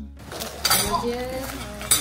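Dining-room clatter of bowls and cutlery clinking, with two sharp clinks about half a second in and near the end.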